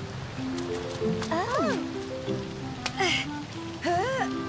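Gentle cartoon background music of held notes, with a short rising-and-falling vocal cry from a character about a second and a half in and another just before the end, over a faint hiss of rain.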